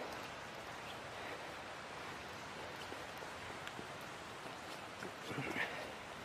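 Steady hiss of rain falling in woodland, with faint scattered ticks of footsteps and drips. A brief voice-like sound comes near the end.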